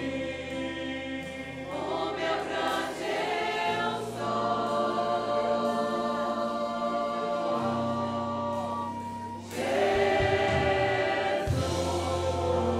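A congregation singing a Portuguese hymn together in long held notes over steady instrumental accompaniment, swelling louder about three-quarters of the way through.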